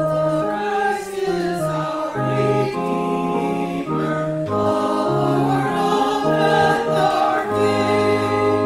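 Organ playing a slow hymn in held chords, with a small choir singing along.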